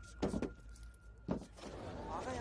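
A few short metallic clinks and rattles: a quick pair about a quarter second in and one more just after a second.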